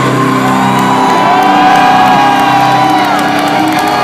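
Heavy metal band at a live show, electric guitar notes held and ringing out over a crowd cheering and whooping; the held notes slide up about half a second in and fall away near three seconds, typical of the end of a song.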